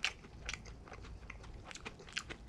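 A person chewing a mouthful of Cantonese fried rice with lettuce close to the microphone, with scattered small clicks as chopsticks pick at the food in a plastic takeout tray. The sharpest click comes right at the start, another about half a second in.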